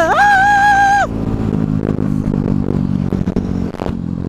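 A man's voice holds one sung note for about a second. Then a KTM dirt bike's engine runs steadily at cruising speed, heard from on the bike.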